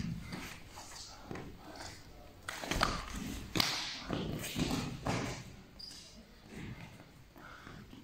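Feet shuffling and thudding on foam training mats as a wrestler drops to one knee from the clinch, grabs a single leg and springs straight back up, with a few thuds about three seconds in.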